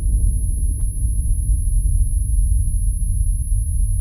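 Deep, steady low rumble from a cinematic logo sound effect, the sustained tail of a boom, with a faint high-pitched tone ringing above it.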